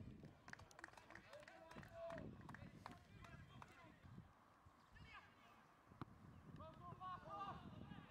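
Faint pitchside sound of an amateur football match: distant players' shouts and calls come and go, with a few short sharp knocks in between.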